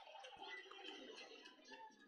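Near silence, with only faint, indistinct background sound.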